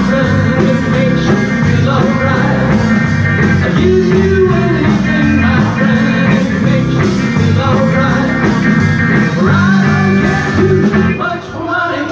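Live rock band playing a song, electric guitar over a steady bass and drum low end; the sound dips briefly near the end.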